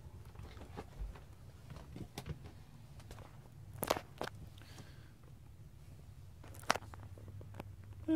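Faint footsteps and light handling knocks inside a motorhome, with two sharper clicks, one about four seconds in and one near the end, over the steady low hum of a running roof vent fan.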